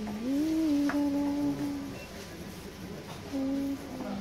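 A woman humming a tune to herself. One long note glides up and holds for about a second and a half, then after a pause a shorter note comes near the end.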